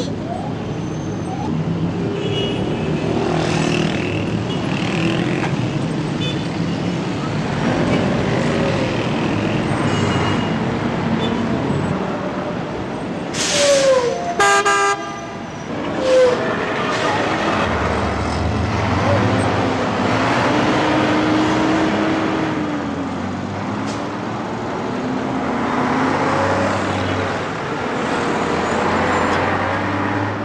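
City street traffic: a steady din of running engines and passing vehicles, with car horns honking now and then. The loudest honks come in a cluster about halfway through.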